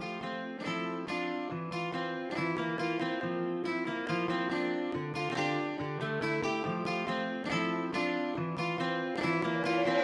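Intro of a hip-hop beat instrumental: a plucked guitar melody playing alone, no drums yet, slowly growing louder.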